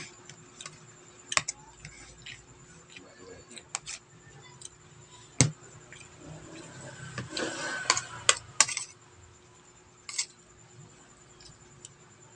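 A metal spoon clinking and scraping against a plate while scooping rice: scattered sharp clicks, the sharpest about five seconds in, and a longer scraping stretch about seven to eight and a half seconds in.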